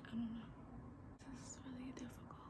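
Quiet speech only: a woman mutters "I don't know" and then speaks under her breath in a breathy near-whisper, over a faint steady hum.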